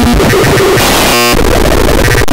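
Loud, harsh, digitally distorted electronic noise that stutters and glitches, with a brief buzzing tone a little over a second in.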